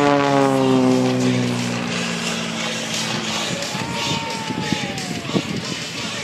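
Single-engine aerobatic propeller plane passing by, its engine note falling in pitch as it goes past and then fading into a noisy wash. A thinner, falling whine is heard about four seconds in.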